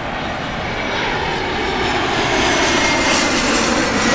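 Jet airliner passing low overhead, its engines a loud, steady roar that swells slightly as it goes over. A faint whine in the roar slides down a little in pitch near the end.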